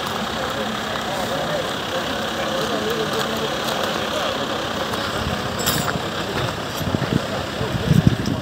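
An engine idling steadily with people talking nearby, and a few low thumps near the end.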